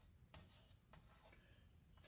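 Chalk scratching faintly on a blackboard as letters are written: two short strokes in the first second and a half.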